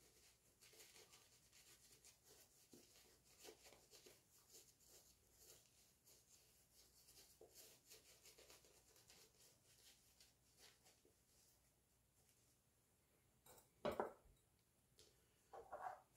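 Faint, repeated rubbing strokes of a synthetic-hybrid shaving brush working lather over the face, stopping about eleven seconds in. A brief louder sound follows near the end.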